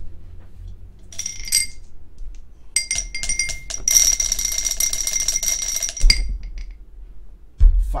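Dice rattling inside a pint glass, shaken in a short bout and then a longer one of about three seconds, with the glass ringing as the dice strike it. The glass is then knocked down twice onto a padded mat; the second thump, near the end, is the loudest. The roll decides how many times the randomizer is run.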